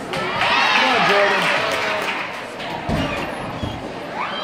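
Voices calling out in a large echoing gym hall, then a dull thud about three seconds in and a softer one just after: a gymnast's feet landing on the balance beam.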